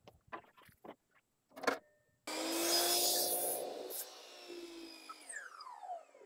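A few light knocks of wood being handled, then an electric saw starts suddenly a little past two seconds and cuts through a cedar board; after the cut the motor coasts down with a falling whine.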